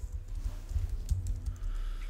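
Typing on a computer keyboard: a quick, irregular run of key clicks over a steady low hum.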